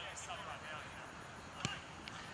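A rugby ball kicked once: a single sharp thud of boot on ball near the end.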